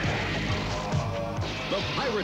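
Soundtrack music with a crash of shattering window glass.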